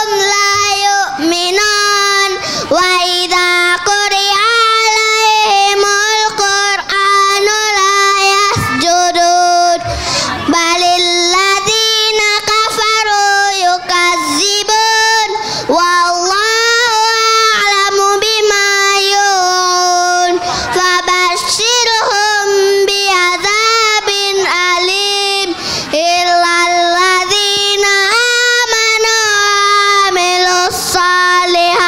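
A young boy singing into a microphone, holding long wavering notes with short breaks for breath every few seconds.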